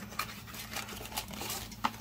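Small cardboard figure box being opened by hand: faint rustling of the card with a few light clicks and taps, the sharpest just before the end.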